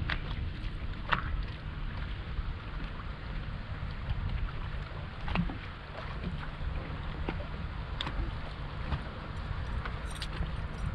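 Wind on the microphone and water slapping against the hull of a drifting fishing boat, a steady rumble and hiss. A few short knocks and clicks come through it at irregular moments.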